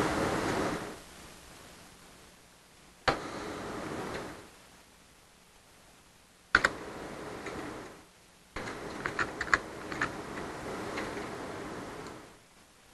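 Computer keyboard keys tapped in scattered presses, with a quick run of several taps in the last few seconds, over a faint hiss that cuts in and out.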